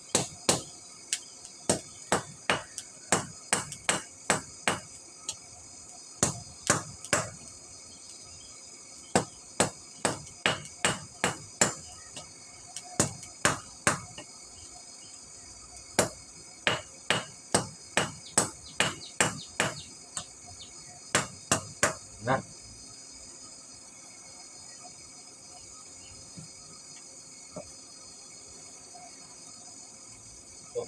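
Hand hammer forging a chisel (tatah) on a small round steel anvil: sharp ringing blows in runs of several strikes with short pauses between runs, stopping about three quarters of the way through.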